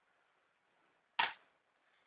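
A single sharp plastic clack about a second in, from a makeup palette being handled between shades.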